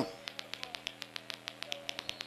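Faint, rapid, regular ticking, about seven clicks a second, over a steady low hum.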